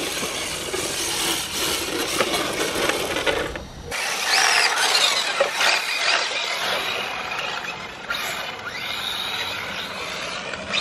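Small radio-controlled car driving on wet tarmac, its motor whining and tyres running on the surface. About four seconds in the sound changes abruptly, and the motor whine then rises and falls in pitch as the car speeds up and slows.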